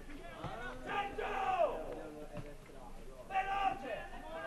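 Players shouting to each other across an outdoor football pitch: a drawn-out call about a second in that falls at its end, and another shout near the end, with a couple of faint knocks in between.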